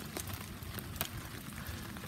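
Steady rain falling on wet gravel, with two sharp ticks: one just after the start and one about a second in.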